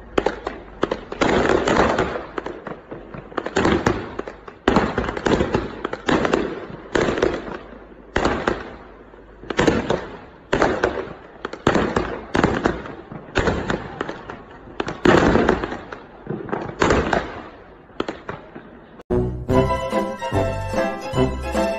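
Fireworks going off at close range in a rapid series of crackling bursts, about one a second. Each burst starts suddenly and trails off.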